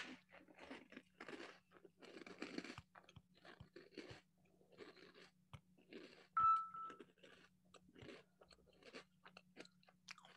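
Close-up crunching and chewing of a crunchy biscuit, in irregular short crunches, over a steady low hum. About six and a half seconds in there is one brief clear tone.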